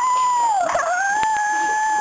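A long, loud, high-pitched howling cry that rises and holds, dips and wavers briefly about two-thirds of a second in, then holds a steady pitch.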